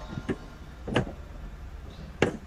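A few short clicks over a steady low hum: two faint ones near the start and a clearer one about a second in.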